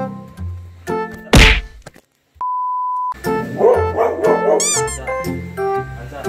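Background piano music, cut by a loud whoosh sound effect about a second in, a brief dropout and then a steady beep tone lasting under a second. This is followed by a golden retriever's excited vocalizing and a short twinkling sound effect before the music resumes.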